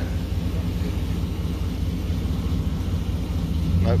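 Pickup truck engine running steadily at low revs as the truck creeps along with one rear corner riding on a wheeled dolly.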